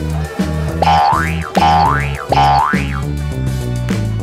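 Three cartoon 'boing' sound effects, each a pitch that sweeps up then drops back, coming in quick succession about a second in. Steady background music runs underneath.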